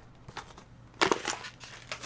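Trading-card packaging handled on a table: a faint rustle, then a louder crunch about a second in and a short one near the end.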